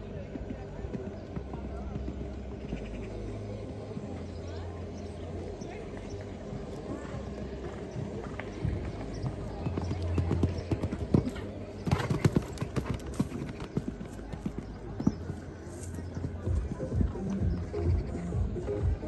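A show jumper's hooves cantering on sand footing, a running pattern of dull hoofbeats, with a cluster of louder thuds about twelve seconds in.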